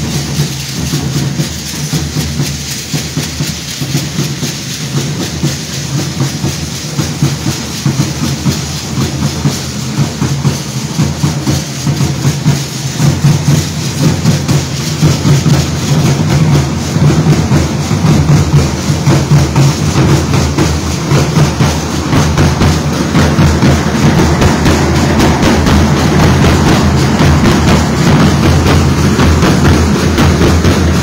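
Several large bass drums beating a steady dance rhythm, mixed with the dense rattling and clatter of many dancers. It grows louder from about a third of the way in as the drummers come near.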